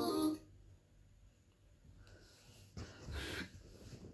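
Music cuts off just after the start. After a quiet pause, a person breathes out close to the microphone, a faint breath about two seconds in and a stronger one near three seconds.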